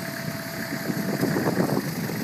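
Kubota M9000 tractor's diesel engine running as it moves the front-end loader, with a thin steady whine over it that stops a little past halfway.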